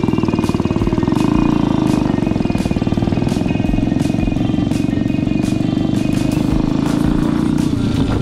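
Single-cylinder four-stroke engine of a custom Simson AWO motorcycle running steadily while riding, with an even, fast firing beat.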